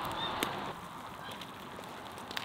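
Water boiling in an uncovered cast-iron cauldron over a wood fire: a steady hiss that eases off a little under a second in, with a few sharp crackles from the burning logs.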